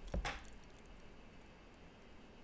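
Brief handling noise from tarot cards: a short rustle and a few faint light clicks in the first half-second, then quiet room tone.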